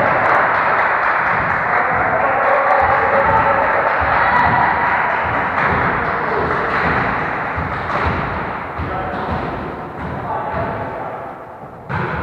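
Indoor volleyball play in a large sports hall: repeated thuds of the ball being hit and of players moving on the wooden floor, over a steady din of the hall, dying down near the end.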